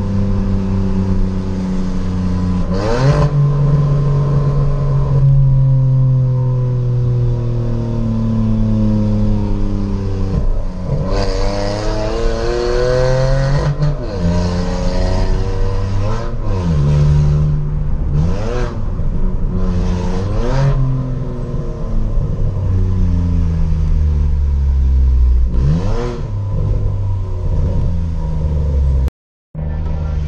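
Hyundai HB20 1.0 three-cylinder engine heard from inside the cabin, its exhaust cutout valve open, pulling through the gears. The pitch climbs and falls again and again as the driver accelerates, shifts and lifts off. The sound cuts out briefly near the end.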